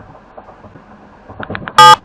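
Low background hiss with faint scattered ticks, then a loud electronic buzz lasting about a fifth of a second near the end.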